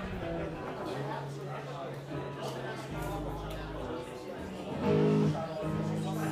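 Live band playing amplified guitar chords over held bass notes, with voices in the room; the music swells louder about five seconds in.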